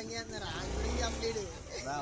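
Men talking, with a brief low rumble of a passing vehicle about halfway through.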